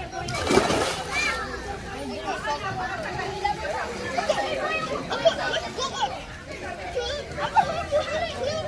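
Several children's voices shouting and chattering at once while playing in a swimming pool, with a splash of water about half a second in.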